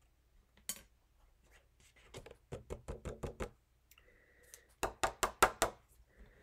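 Black cardstock being tapped against a plastic tray to knock off excess white embossing powder: a single click, then two quick runs of light taps, the second louder near the end.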